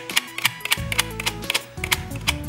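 Computer keyboard's F8 key tapped repeatedly, several clicks a second, to call up the safe-mode boot menu as the PC starts, over background music.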